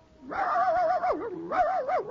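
A dog howling in two long, wavering phrases, each sliding down in pitch at the end.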